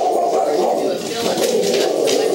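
Loud, continuous machine noise from tree-trimming work, drowning out the conversation, with a short laugh near the start.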